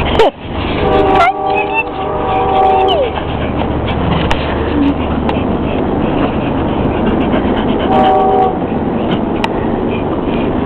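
A horn sounding several tones at once, held for about two seconds starting a second in and ending with a drop in pitch, then again briefly about eight seconds in, over a steady low hum.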